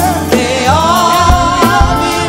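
Church worship team singing a gospel song together, backed by a live band with bass and regular drum hits on the beat.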